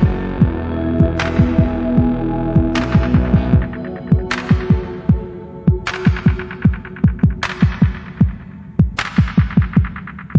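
Background music: deep, pitch-falling bass-drum hits in a quick rhythm, with a bright crash-like hit about every one and a half seconds. Held synth chords underneath fade out about a third of the way in.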